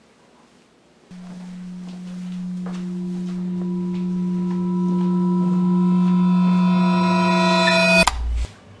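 Suspense film-score drone: a low steady tone comes in about a second in, higher tones layer on top, and it swells steadily louder before cutting off suddenly at the end.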